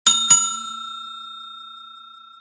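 Bell-ding sound effect for the notification bell of a subscribe animation: a bell struck twice in quick succession at the start, then ringing on and slowly fading.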